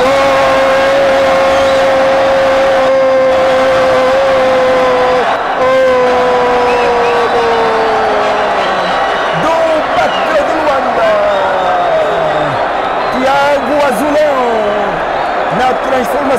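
A voice holding one long drawn-out note for about five seconds, then a second note that falls away, followed by several shorter rising and falling calls.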